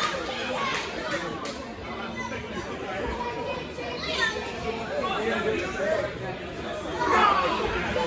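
Audience chatter in a large hall: overlapping voices, with louder shouts about four seconds in and again near the end.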